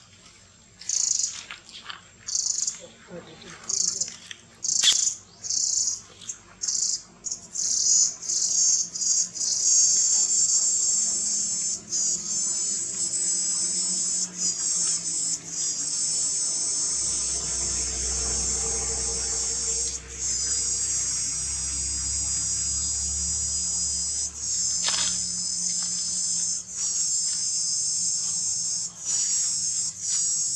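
Insects calling high-pitched in the trees, at first in short pulses about once a second that quicken and run together into a continuous chorus about a third of the way in, broken by a few brief gaps. A low rumble sits under it in the middle.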